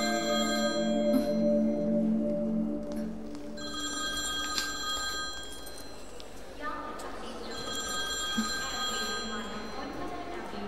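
A telephone ringing in two long bursts, the first about three and a half seconds in and the second near the end, over soft film music that holds low sustained notes at the start.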